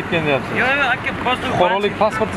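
People talking, with a steady low hum of street background beneath the voices.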